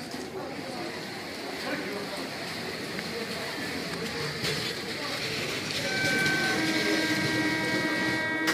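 Platform crowd chatter over the slowly rising rumble of an approaching electric suburban local train; about six seconds in a steady whine of several high tones joins and holds.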